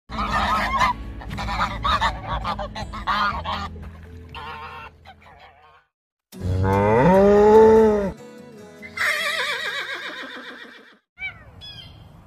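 A flock of domestic geese honking repeatedly. After a short gap, a cow gives one long moo that rises at its start. A higher, wavering animal call follows, with a few short chirps near the end.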